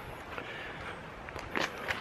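Faint footsteps on dry leaf litter, with a few light crunches in the second half.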